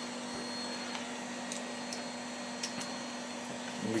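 Steady background hiss with a low hum and a faint thin high whine running under it.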